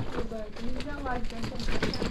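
Faint talking in the background, quieter than the main voices around it, with a few light knocks.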